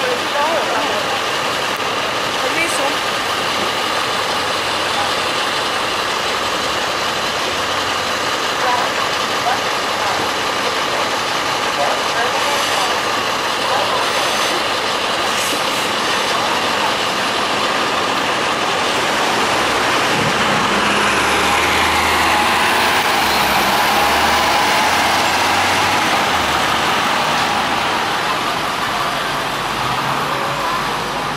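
City-bus diesel engine of an NJ Transit NABI 40-SFW running in street traffic. It grows louder about two-thirds of the way through, with a whine that falls in pitch.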